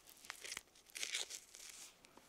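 Rustling and scraping of a mesh post-surgery recovery suit as hands pull and adjust it on a kitten: a short burst, then a longer, louder one from about a second in, with a couple of small clicks.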